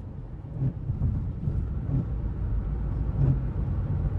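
Inside the cabin of a Chrysler 300 cruising at highway speed on a wet road: a steady low rumble of engine and tyre noise.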